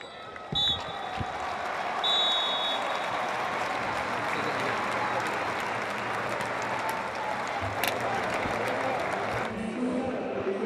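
Referee's whistle blowing full time, a short blast and then a long one, over a stadium crowd applauding and cheering that swells and carries on until it drops away just before the end.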